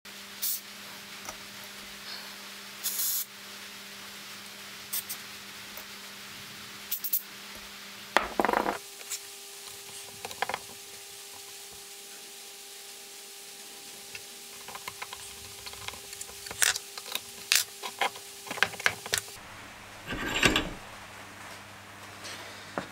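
Scattered light metallic clicks and clinks as small carburettor parts and tools are handled and set down on a steel workbench, with a short scrape twice and a quick run of clicks near the end.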